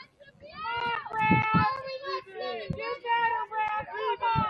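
People shouting, a string of loud drawn-out calls with high, held pitch that start about half a second in and follow one another with barely a break.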